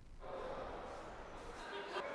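Faint room noise with indistinct, distant voices, setting in about a quarter of a second in.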